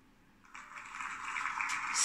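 A computer sound effect of applause, played through laptop speakers, marking the online name wheel stopping on a winner. It starts about half a second in as a thin, hissy noise and grows louder.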